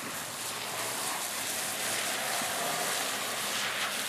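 BMW M3 sliding across a wet, sprinkler-soaked skid pan: a steady hiss of tyres and spray on standing water, swelling slightly, with the engine faintly underneath.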